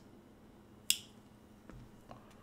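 A single sharp click about a second in, then a faint low thud near the end, in a quiet room.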